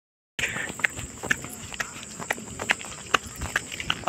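Footsteps on a dry dirt path, irregular scuffing and crunching steps about two or three a second as people climb a steep hillside. The steps begin after a moment of silence at the start.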